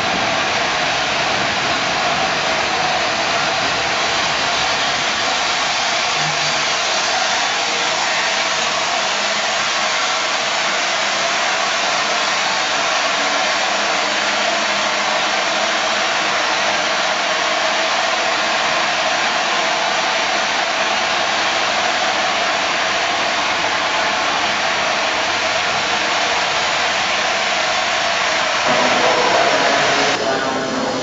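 LNER Class A4 Pacific No. 60009 Union of South Africa standing with steam blowing off from its safety valves: a loud, steady hiss.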